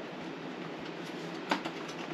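A Mylar bag of rice being set down inside a vacuum sealer's chamber: faint handling over a steady background hiss, with one short knock about one and a half seconds in.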